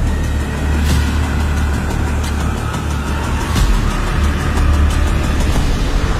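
Dark, suspenseful background music carried by a deep, steady low rumble, with a few faint sharp accents.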